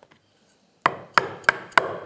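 A 10 mm 90-degree corner chisel being struck from above four times, about a third of a second apart, with sharp knocks starting a little under a second in. The blows drive it into the corner of a routed groove in wood to chop the rounded end square.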